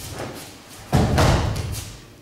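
A thrown person lands on the training mat with a heavy thud about a second in, followed by a brief rustle and scuffle of gi cloth. A few lighter scuffs of feet and cloth come first, during the grip and lift.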